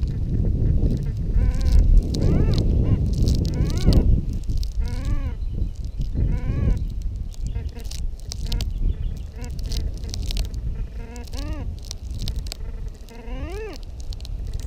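Whites MX Sport metal detector in all-metal mode at full sensitivity (10) giving a series of short rising-and-falling warbling tones as the coil is swept over the ground. A low rumble runs under the first four seconds.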